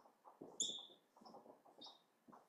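Marker pen squeaking and scraping on a whiteboard as letters are written: short high squeaks, the loudest about half a second in and another near the end, over soft scratchy strokes.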